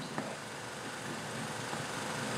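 Faint steady hiss and hum of an old 16mm film soundtrack, with one small click near the start.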